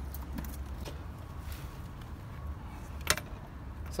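Steel electrical enclosure covers being unlatched and swung open: small metallic rattles and clicks, with one sharp metal click about three seconds in, over a steady low hum.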